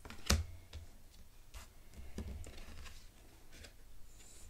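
Oracle cards handled on a table: a sharp tap as a card is laid down about a third of a second in, then a few lighter taps and rustles as the next card is picked up.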